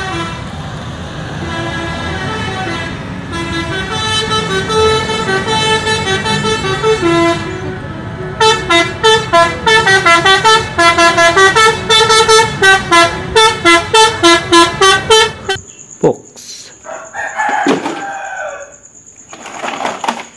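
Indonesian coach's multi-tone musical air horn (a "telolet" horn) playing a tune: first a held, note-changing melody for several seconds, then quick toots about two a second, cutting off suddenly a little past the middle.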